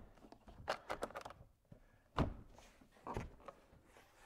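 Plastic driver's door panel of a 2012 Ford F-250 knocking against the door as it is lifted and pushed back down onto its retaining hooks and clips. There are a few light knocks about a second in, then one sharp thunk a little after two seconds.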